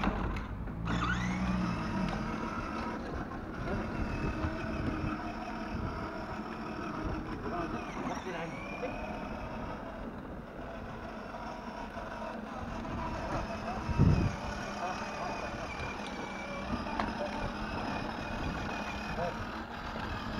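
Small electric motor of a child's battery-powered ride-on toy quad whining steadily, its pitch wavering up and down as it drives over asphalt. One loud thump about fourteen seconds in.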